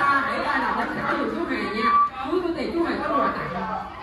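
Overlapping chatter of children and adults talking in a large room.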